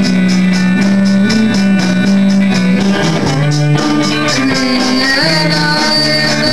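Punk rock band playing live: electric guitar and drum kit, loud and continuous, with a steady drum beat under chords that change every second or so.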